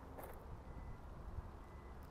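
Kia Forte's Smart Trunk warning beeping, faint and high-pitched: the car has detected the key fob behind it and is signalling that the trunk is about to open automatically.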